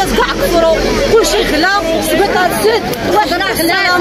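Speech only: a woman talking, with other voices talking over her at the same time.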